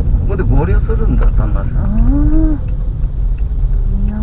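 Voices talking inside a moving car, with a long drawn-out rise and fall of the voice about halfway through, over the steady low rumble of the car on the road.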